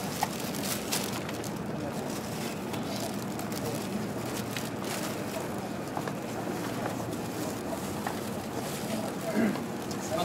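Steady interior noise inside a JR Kyushu 305 series electric train car, a low hum with a few faint clicks and knocks.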